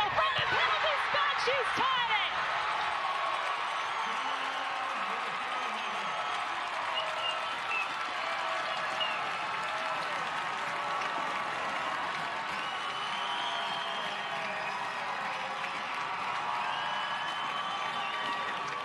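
Stadium crowd cheering and clapping for a goal, loudest with shouts in the first two seconds, then settling into steady applause and voices.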